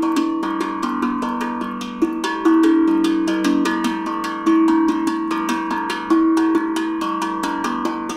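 Stainless steel Vermont Singing Drum, a steel tongue drum, struck with mallets in a quick, improvised stream of notes. The notes ring on and overlap, with louder accented strikes every couple of seconds.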